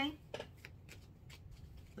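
Tarot cards being handled and shuffled: a few faint, sparse card snaps and taps.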